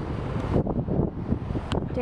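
Wind buffeting a handheld camera's microphone outdoors: an uneven low rumble, with a short faint click near the end.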